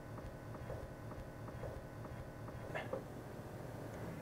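Tesla Cybertruck's air suspension compressor running faintly as it fully inflates the air springs to lift the truck into extract mode, a low steady hum with a light regular ticking. This is normal operation.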